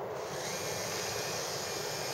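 Six small FC-140 electric motors with gears, running the RC model warship at speed: a steady whirr with water hiss from the hull. A brighter high hiss comes in about half a second in.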